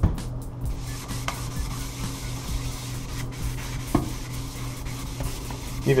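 Green abrasive scrubber pad rubbed against a brushed stainless steel sink basin: a steady rasping scrub, with a couple of light knocks, as the pad sands stains and scratches out of the steel's grain.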